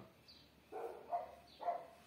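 Four short, faint animal calls about half a second apart, with a few faint high chirps between them.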